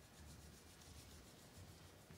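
Near silence: faint rustling and room tone.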